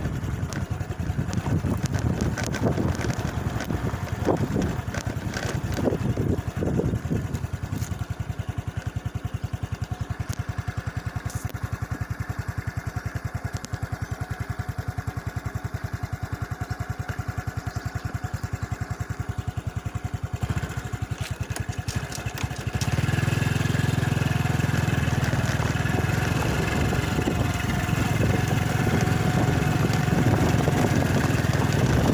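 Motorcycle engine running while riding along a rough dirt track, with knocks and wind on the microphone during the first several seconds. About 23 seconds in, the engine gets louder and heavier, as under more throttle, and stays so.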